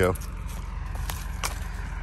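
Footsteps through dry leaves and brush, with a couple of sharp crunches or twig snaps about a second in, over a steady low rumble.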